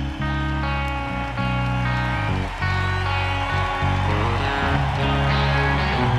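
Rock music with electric guitar over a moving bass line.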